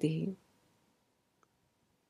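A woman's spoken word ends just after the start, then near silence, broken by a single faint click about one and a half seconds in.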